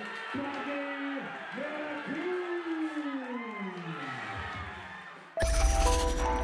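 A ring announcer's voice over a hall PA drawing out the winner's name in long, sweeping, sing-song syllables, with crowd noise beneath. About five and a half seconds in, a loud music sting with heavy bass cuts in suddenly.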